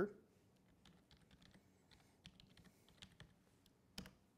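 Faint typing on a computer keyboard: a string of light, irregular key clicks, with one sharper keystroke near the end.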